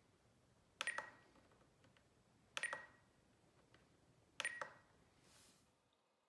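Spektrum DX9 transmitter's scroll wheel clicked three times, evenly spaced about two seconds apart, each a quick double click with a short beep while stepping through the sub trim settings.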